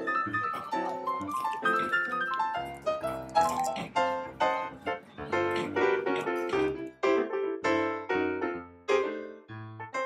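Upbeat background music led by a piano or electric-piano melody, with quick notes and chords and a bass line underneath.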